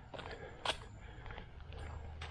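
Footsteps of a person walking on a dirt path, a few faint separate steps.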